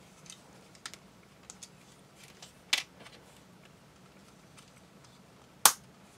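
Small clicks of snap-fit plastic model-kit parts being handled and pressed together, with a sharper snap near the middle and a louder one near the end as the last piece clicks into place.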